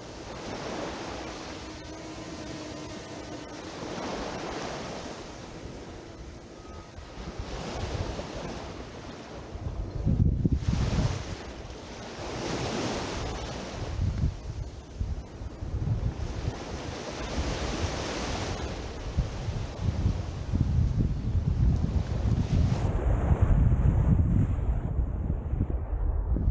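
Small waves washing onto a sandy beach, swelling and fading every few seconds. Wind buffets the microphone with low rumbling gusts from about ten seconds in, growing stronger toward the end.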